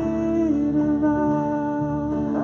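Worship band music: voices holding long sung notes, with a pitch change about half a second in, over acoustic guitars.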